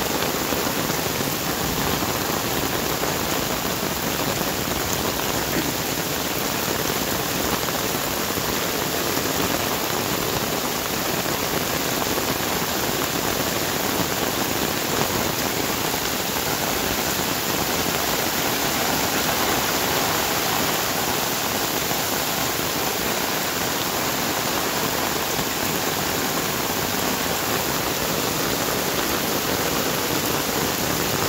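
Heavy rain falling steadily on ground and foliage, with floodwater running over the soil.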